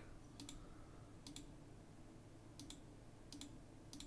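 Faint computer mouse button clicks, each a quick press-and-release double tick, several of them at uneven intervals.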